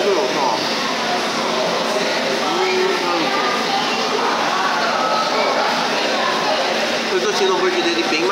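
Indistinct voices over the steady background hubbub of a busy fast-food restaurant dining room.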